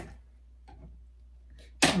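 A hand tool prying staples out of fabric stapled to a wooden shelf, heard as a couple of faint, short scrapes or clicks over a low steady hum.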